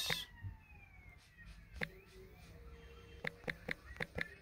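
A faint siren wailing, its pitch gliding slowly up and down. A few short light clicks come in the second half.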